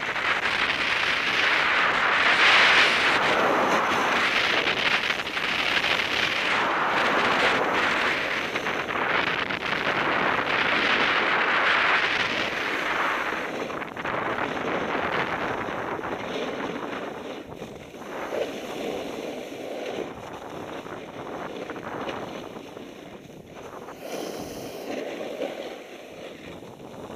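Ski edges scraping and hissing over hard, wind-crusted snow on a downhill run, mixed with wind rushing across the camera microphone. The noise swells and fades in surges through the first half, then eases and gets quieter.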